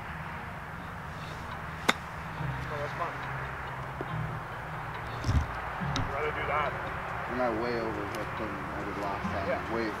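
A golf ball struck once by a 60-degree wedge on a chip shot about two seconds in, a single sharp click. A low rumble runs underneath, and faint voices follow.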